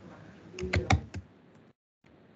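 Typing on a computer keyboard: four or five keystrokes in quick succession, starting about half a second in.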